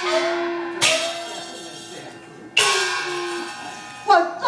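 Metal percussion of a Taiwanese opera band, gongs and cymbals: two loud clashes, one about a second in and one past two and a half seconds, each ringing on with a shimmering metallic tail and fading.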